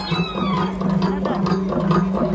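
Khasi traditional dance music: a steady droning note held with only brief breaks, with recurring drum strokes, over crowd chatter.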